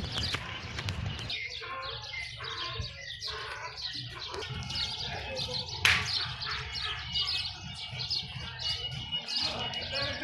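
Small birds chirping repeatedly and busily in the background, with one sharp click or knock about six seconds in.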